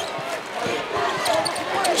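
A basketball being dribbled on a hardwood court, several separate bounces, over the steady murmur of an arena crowd.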